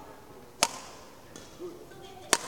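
A single sharp crack of a badminton racket striking a shuttlecock, about half a second in, ringing briefly in the hall.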